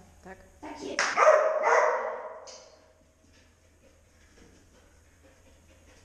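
A dog barks a few times in quick succession about a second in, with a ringing echo that dies away within a couple of seconds.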